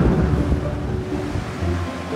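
Wind and sea noise on an ocean racing yacht's deck, thinning out as soft background music with long held notes comes in.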